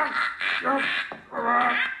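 Cartoon voice of a boy being throttled: short, choked, squawking gurgles, from a dull, low-fidelity TV clip.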